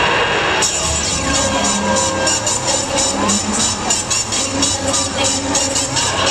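Loud cheerleading routine music: an electronic dance mix with a steady beat, which changes section about half a second in.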